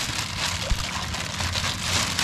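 Thin plastic fish bag crinkling as it is handled down in pond water, with water moving in and around it: a steady crackling hiss.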